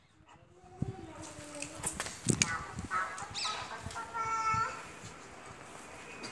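Long-coated German shepherd puppy whining in several short high-pitched calls, with a longer steady whine a little past the middle.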